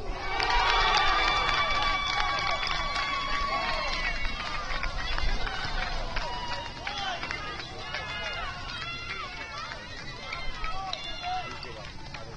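Shouts and calls from soccer players and coaches across the field, short calls coming again and again, with one long held call in the first few seconds and a few sharp knocks among them.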